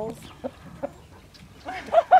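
Chickens clucking, a few short clucks near the end.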